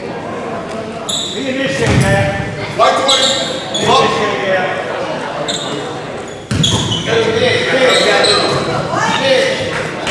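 Players' and spectators' voices echoing in a school gymnasium, with a basketball bouncing on the hardwood floor. A few short high-pitched chirps cut through in the first half.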